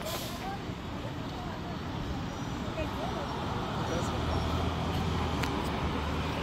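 Low, steady engine rumble of a city bus amid street traffic, growing louder from about four seconds in.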